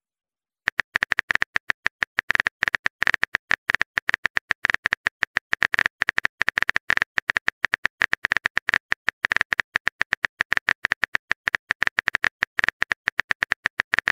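Phone keyboard typing clicks: a rapid, uneven stream of short taps, several a second, starting about a second in as a message is typed out.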